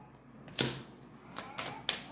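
A card being laid down on a wooden table: a sharp tap about half a second in, then a few lighter clicks near the end.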